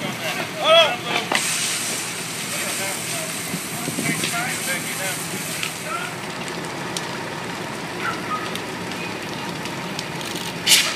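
Steady roar and crackle of a large, fully involved building fire, with a loud voice calling out under a second in and faint voices later.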